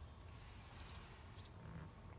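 Near silence: a faint low background hum, with two faint, very short high chirps about a second in.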